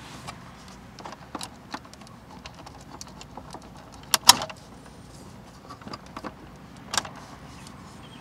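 Small plastic clicks and rattles as a wiring-harness connector is wiggled and unclipped from the back of a car's dash trim panel, with the loudest a quick double click about four seconds in and another sharp click near seven seconds.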